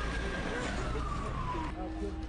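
Emergency vehicle siren wailing: one tone holding high, then sliding slowly down before it cuts off abruptly near the end, over street rumble and voices.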